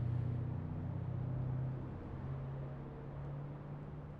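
Steady low hum of a vehicle engine with faint road noise; the hum's pitch steps up slightly about halfway through.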